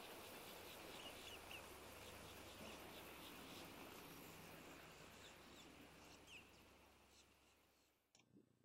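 Near silence: a faint, steady hiss with a few faint, short chirps, fading out about six seconds in.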